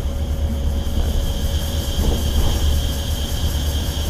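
Cabin noise inside a coach bus driving at speed: a steady low engine and road rumble with a faint steady high whine over it.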